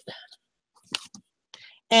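A woman's voice trails off, then a near-silent pause broken by one short, sharp sound about a second in, before she starts speaking again at the very end.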